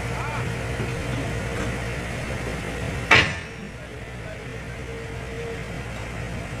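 A heavy diesel engine running steadily at a low rumble, with one sharp knock about three seconds in.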